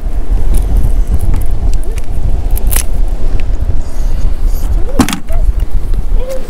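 Wind buffeting the microphone as a loud, steady low rumble, with a couple of sharp clicks about three and five seconds in.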